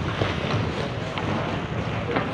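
Ice hockey play: a steady rushing noise of skates on the ice, with a few light clicks of sticks and puck.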